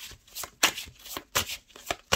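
A deck of oracle cards being shuffled by hand: a quick, irregular run of short rustling strokes, about four a second.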